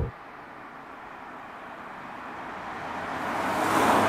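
A silver Citroën C6 diesel saloon driving past: mostly tyre and road noise, swelling steadily as the car approaches and loudest near the end as it passes close by.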